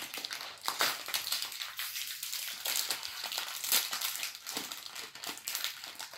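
Foil wrapper of a Choco Pie cake bar crinkling as it is opened by hand, a dense run of irregular crackles.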